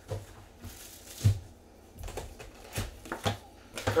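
Cardboard hobby box of trading cards being handled on a table: a few scattered knocks and light rustles, the sharpest about a second in.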